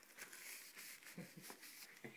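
Near silence: faint room hiss with a few soft clicks.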